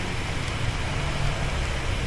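Steady low hum with an even hiss, no other events.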